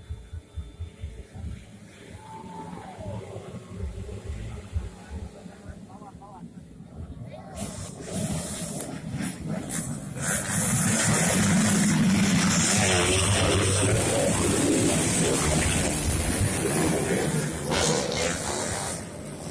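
Crowd voices at a dirt-bike race, then from about ten seconds in a pack of motocross bikes running loud and close as they come through, their engines revving over the shouting spectators.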